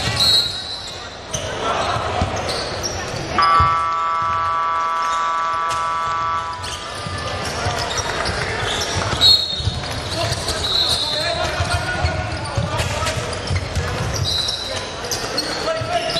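Basketball game sounds: a ball bouncing on the hardwood court, sneakers squeaking several times and players' voices. A steady scoreboard horn sounds for about three seconds, starting about three seconds in.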